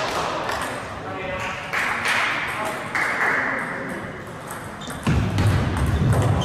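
Table tennis ball clicking off bats and the table in quick succession during a rally, with voices in the hall behind. A louder low rumble comes in near the end.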